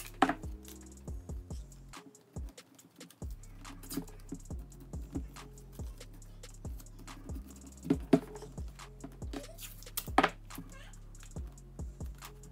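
Background music with a steady bass line, over short sharp rips, taps and rustles of blue painter's tape being pulled from the roll and pressed onto a sneaker's midsole. The loudest rips come about a second in, near 8 seconds and near 10 seconds.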